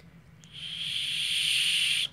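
A survival whistle built into the clasp of a paracord bracelet is blown once: a breathy, steady high whistle that starts about half a second in and lasts about a second and a half.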